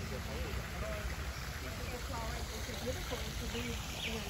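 Faint, indistinct voices of people chatting, no words made out, over a steady low background rumble.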